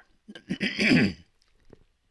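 A man clearing his throat once, about half a second in, lasting under a second.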